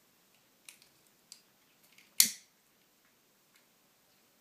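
Handheld lighter clicking: a few faint clicks, then one sharp, louder click a little over two seconds in.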